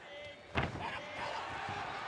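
A single loud impact about half a second in, with a short ringing tail, as two MMA fighters break from a clinch. Men's voices talk around it.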